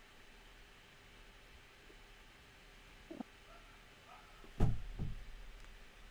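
Quiet microphone room tone in a pause between speech, with a faint short sound about three seconds in and a sharp knock about four and a half seconds in, followed by a softer one.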